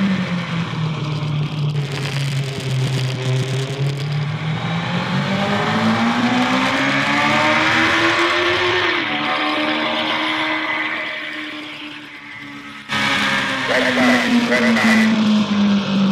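Racing motorcycle engine at high revs, its pitch sinking, then climbing steadily to a peak about halfway through before dropping away and fading. An abrupt change a little after two-thirds of the way brings in another engine note that falls in pitch.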